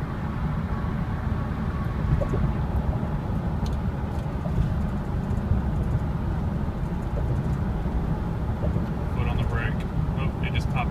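Steady engine and road noise inside the cabin of a 2003 Chevrolet Suburban cruising at highway speed, the engine holding an even rpm. Near the end come a few short, high clicks.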